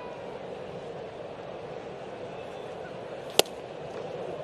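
Steady murmur of a ballpark crowd, with a single sharp pop about three and a half seconds in as a fastball smacks into the catcher's mitt on a swinging miss.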